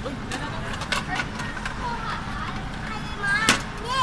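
A few sharp plastic-and-metal clicks from a capsule-toy vending machine as its crank is turned and a capsule is taken out, over faint voices and steady shop background noise.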